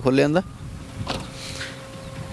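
Honda Amaze's driver-side power window motor running as the glass is lowered with a one-touch switch.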